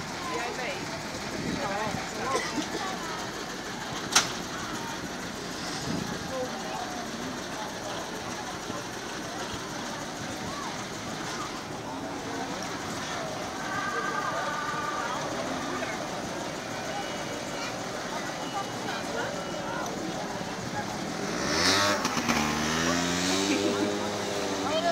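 Chatter of a crowd with children's voices around a slow-moving vintage fire truck; near the end the truck's engine revs up, rising in pitch and getting louder.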